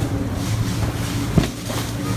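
A steady low hum, with a short sharp sound about one and a half seconds in.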